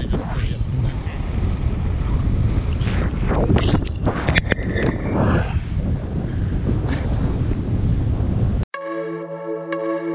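Heavy wind buffeting the microphone of an action camera on a moving kite buggy, with a voice briefly heard around the middle. About nine seconds in it cuts off suddenly to electronic music.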